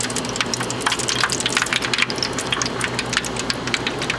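Hot frying oil poured from a frying pan into a disposable aluminium foil pan, crackling and pattering densely and irregularly, over a steady low hum.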